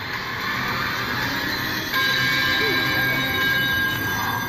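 Slot machine sound effects over a steady casino din. About halfway through, the machine starts a held cluster of steady tones as its bonus feature triggers.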